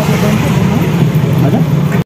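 Steady low rumble of road and vehicle noise heard from the open back of a moving auto-rickshaw, with faint voices over it.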